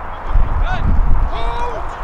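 Wind buffeting the microphone in heavy, uneven low gusts. Over it come a few short pitched calls, a brief one just under a second in and a longer one about a second and a half in.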